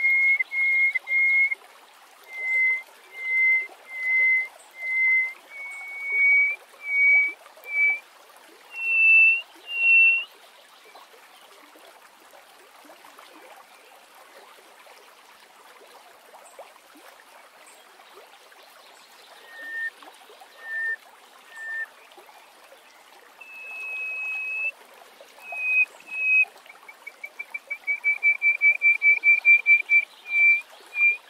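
Hoopoe lark singing: a series of clear, piping whistled notes, evenly spaced and stepping up in pitch. After a pause midway come a few lower notes and a long held note, then a fast trill of short notes near the end. A faint steady noise lies underneath.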